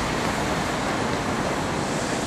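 Steady, even background noise with no distinct events, such as street ambience or wind on a camera microphone.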